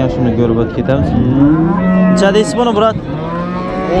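Cows mooing: several long, drawn-out calls overlapping one another.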